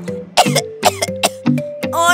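A child coughing several times in short bursts over children's-song backing music.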